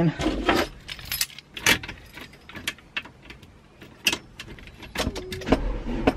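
Keys jangling and clicking at a van's ignition as the key is handled, with a low rumble starting near the end.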